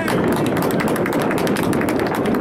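Outdoor field ambience at a soccer match: a steady rush of low noise with a rapid run of light ticks, and faint distant voices of players on the field.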